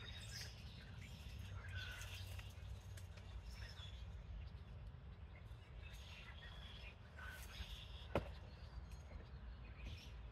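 Faint, scattered bird chirps over a low, steady background rumble, with a single sharp tap about eight seconds in.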